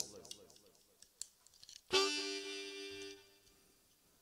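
Harmonica blown once: a single held chord that starts suddenly about two seconds in and lasts about a second before fading.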